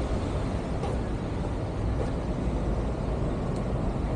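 Steady low rumble of street traffic and running buses.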